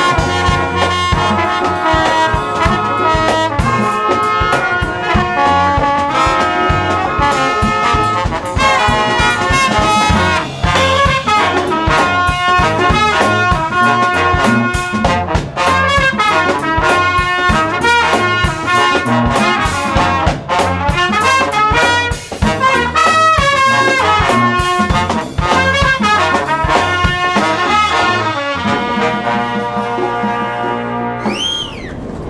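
Live brass ensemble of trumpets, trombones and sousaphone playing a riff-based tune over a drum kit's steady beat.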